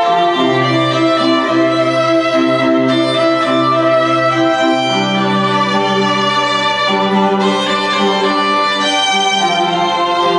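Recorded show music led by bowed strings, violins over cello and bass, in long held notes with the bass line moving every second or so, played back through a gym's loudspeakers.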